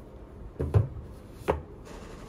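Two knocks, under a second apart, as paperback manga volumes are set down and pushed into a row on a cabinet top.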